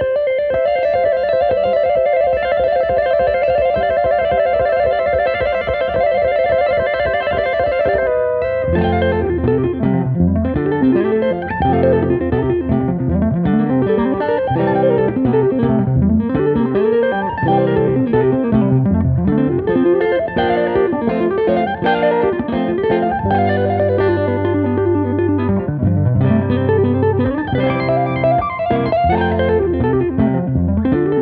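Two hollow-body electric guitars playing an instrumental: a rapid trill held on one pair of notes for about the first eight seconds, then a busy two-handed tapping line with lower notes joining underneath.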